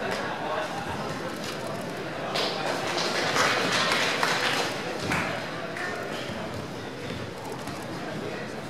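Crowd of spectators in a hall shouting and cheering, swelling to its loudest between about two and a half and five seconds in, with a few sharp knocks.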